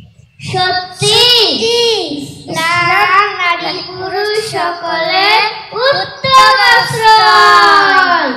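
A young child singing a melodic chant into a microphone, with long held notes that slide up and down, starting about half a second in and pausing briefly twice.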